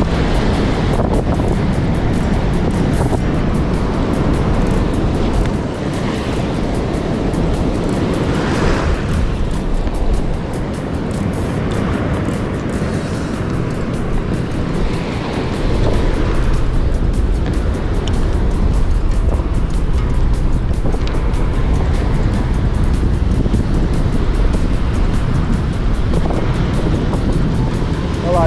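Wind rumbling on the microphone over surf washing onto a beach, louder again from about halfway through.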